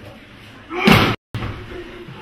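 A single sudden slap of a body hitting the training mat during a self-defence throw, about three-quarters of a second in, followed by a brief cut-out of all sound.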